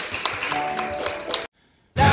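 Audience clapping, scattered and uneven, with faint lingering musical tones underneath. It cuts off abruptly to silence about one and a half seconds in.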